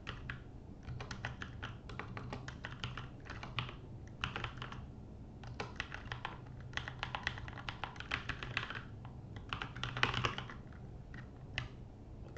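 Typing on a computer keyboard: quick runs of keystroke clicks with short pauses between them, one about midway and another near the end.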